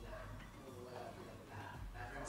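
Faint, distant-sounding talking at low level over a steady low hum.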